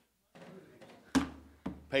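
A hymnal set down on a wooden pulpit, picked up by the pulpit microphone: one sharp thump about a second in, then a lighter knock.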